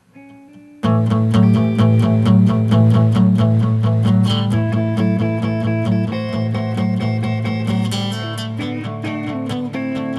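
Acoustic guitar and electric guitar playing together. A few quiet single notes, then both guitars come in loudly at about a second in with strummed chords over a steady low note.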